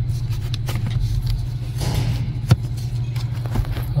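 Steady low hum of the vehicle running, with a few sharp light clicks as plastic HVAC damper parts are handled.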